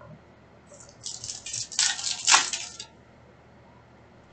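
A foil trading-card pack wrapper is torn open and crinkled: a run of crackling rustles that lasts about two seconds and is loudest near its end.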